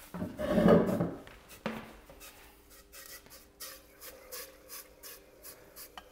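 Liquid nitrogen boiling in a metal dewar as a rubber strip cools in it: a short rush of noise in the first second, then faint, irregular crackling and bubbling as the cold liquid boils against the warmer rubber.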